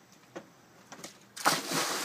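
A person landing in a swimming pool after a back flip: a sudden loud splash about one and a half seconds in, then the hiss of spray and churning water.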